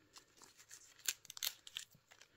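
Leaves of a pineapple crown being pulled off sideways by a cotton-gloved hand: faint crackling and tearing rustles, a quick run of small snaps about a second in.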